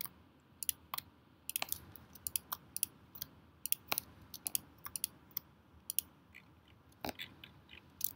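Irregular clicks of a computer mouse and keyboard during CAD drafting, single clicks and quick clusters with short pauses between them.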